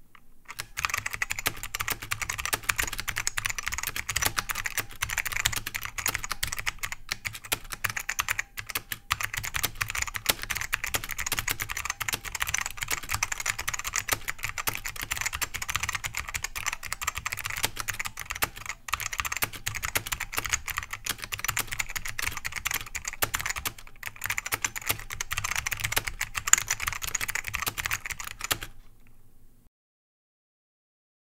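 Touch typing on a FlagK Iori keyboard with Xiang Min KSB-C Blue Alps-clone switches: a dense, fast run of keystrokes with a few brief pauses. It starts about half a second in and stops about a second before the end.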